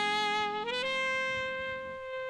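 Saxophone playing a held note, then sliding up to a higher note and holding it, with the rest of the band mostly dropped out beneath it.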